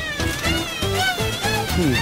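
Background music score: a wavering high melody over held low notes.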